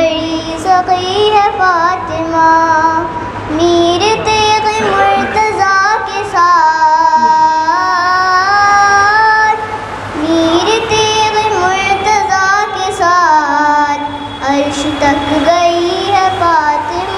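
A young girl's voice singing a devotional naat into a microphone, drawing out long, wavering melismatic notes that rise and fall, with only brief breaths between phrases.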